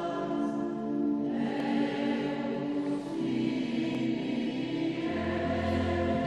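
Church choir singing slow, sustained notes in a resonant church; a deep low note enters about five seconds in.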